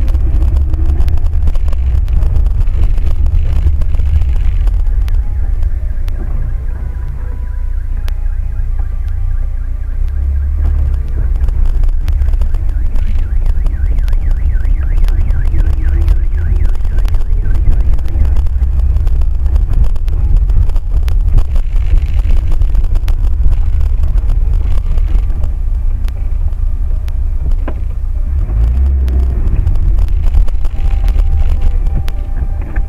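Road and engine noise of a moving car heard from inside the cabin through a dashcam microphone: a steady, loud low rumble.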